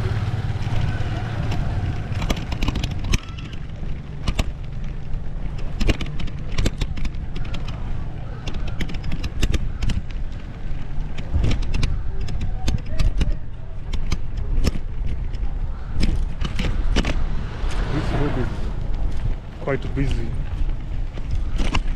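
Wind noise on the microphone of a bicycle-borne camera riding over a rough dirt road, with frequent sharp clicks and knocks as the bike and mount jolt over the bumps.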